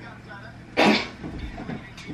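A young man coughs once, hard and sudden, about a second in, choking on a bite of a sandwich spread with a spicy filling.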